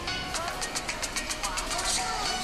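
Music with a fast, high ticking beat, about seven ticks a second, over indistinct voices.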